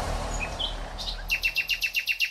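A rapid series of short bird chirps, about seven a second, starts a little over a second in, over the fading low rumble of a deep hit.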